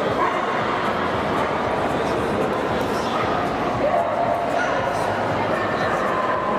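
Continuous crowd hubbub of many indistinct voices in a large hall, with dogs yipping and barking here and there.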